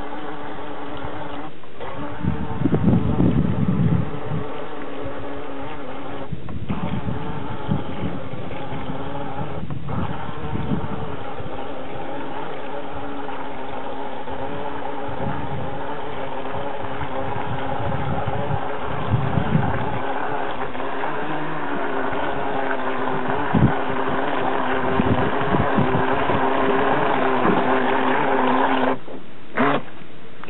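Battery-powered electric motor of a Fish Fun Co. 'Bass Pro' RC fishing boat running steadily at speed on the water with a constant whine, and a few brief low rumbles along the way.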